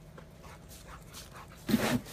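A dog barks once, short and loud, near the end, after a few faint breathy sounds.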